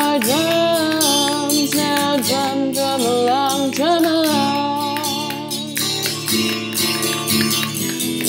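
A woman singing a simple children's 'drum along' melody over guitar accompaniment, with quick clicks from a homemade spin drum twirled between the palms.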